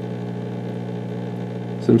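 A steady low electrical hum with a few faint overtones and no change in pitch.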